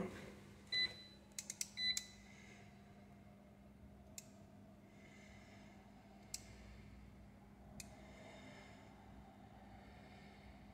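Seaward PrimeTest 100 PAT tester beeping twice, with short high beeps about a second and two seconds in among a few clicks, as it runs the earth-bond test on the fridge freezer. Three sharp clicks follow a couple of seconds apart, over a faint steady hum.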